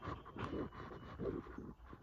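Faint, irregular rustling and handling noise, as of fabric brushing close to a phone's microphone.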